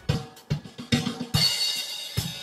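A recorded drum-kit track playing back: a steady kick and snare beat at about two hits a second, with a cymbal crash about a second and a half in. It is the song's too-loud closing section, now turned down with Audacity's Amplify effect to match the rest of the track.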